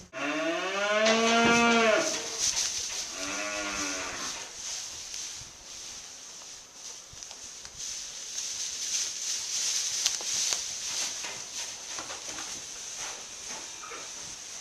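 Calves mooing: one long call that rises in pitch and then holds for about two seconds, then a shorter second call, followed by rustling and scattered light knocks.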